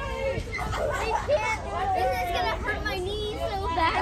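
Many children's voices talking and calling over one another at once, with no single voice standing out.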